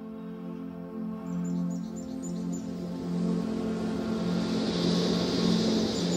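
Ambient music with a held drone, growing louder. A run of high chirps comes about a second in, and a rush of splashing water swells in the second half.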